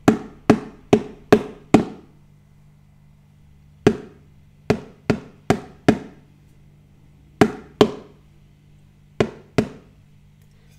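A plastic food container struck with a wooden spatula as a homemade percussion instrument, tapping out rhythm patterns: a run of five taps, a pause, five more taps, then two pairs of taps, the pauses marking the silent beats.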